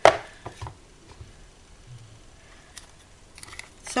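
A single sharp knock as an object is set down on a tabletop, followed by a few faint handling clicks and taps.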